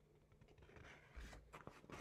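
Near silence with faint paper rustling and small ticks as a page of a paperback picture book is turned; the handling grows a little busier in the second half.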